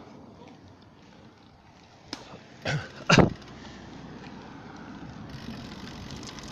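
Steady rolling noise of a bicycle ride on asphalt, tyres and wind on the phone's microphone, broken about halfway through by two loud, brief bursts of noise, the second louder.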